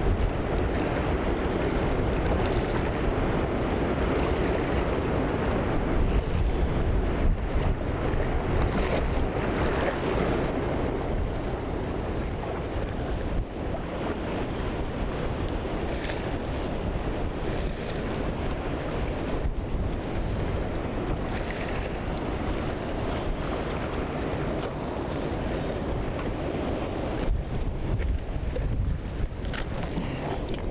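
Steady rush of a fast, broken river current running past rocks, with wind rumbling on the microphone.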